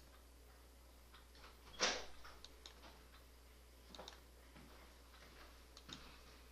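A computer mouse clicking now and then as points are placed, with one louder click or knock about two seconds in, over a low steady hum.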